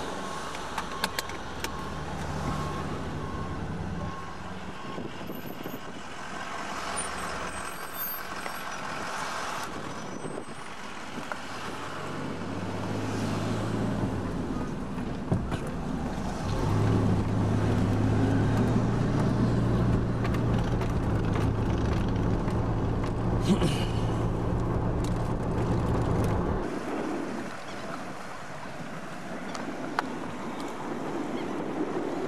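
Car engine and road noise heard from inside the moving vehicle. A steady low engine hum grows louder a little past the middle and drops away shortly before the end.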